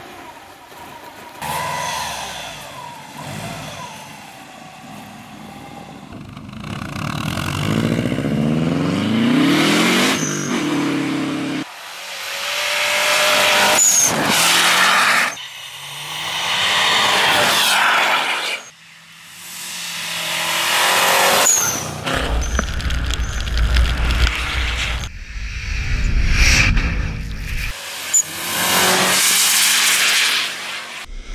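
Subaru Forester STi's turbocharged flat-four engine revving hard under acceleration as the car drives through deep snow, over the rush of tyres and spraying snow. The sound comes in several sections that cut off abruptly, with rising revs in the middle.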